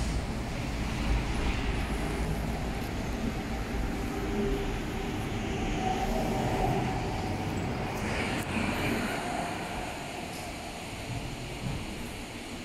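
Steady low rumbling noise of a handheld camera microphone being carried on the move: wind and handling noise.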